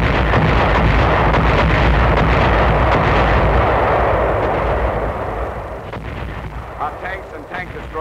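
Artillery fire from howitzers: a sharp blast, then a continuous heavy rumble of gunfire and shell bursts that fades away after about five seconds.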